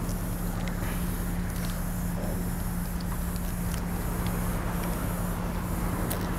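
A steady low mechanical hum over outdoor background noise, with a few faint clicks.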